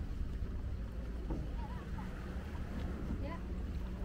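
Outdoor ambience of a busy footpath: a steady low rumble with faint voices of passing walkers.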